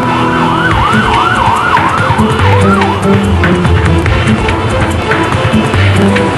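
An emergency-vehicle siren in a rapid yelp, its pitch rising and falling about three times a second, fading out about three seconds in, over background music.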